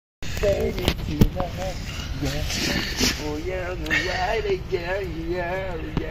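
A person's voice, sliding up and down in pitch without clear words, over a steady low rumble, with a few sharp clicks in the first second or so.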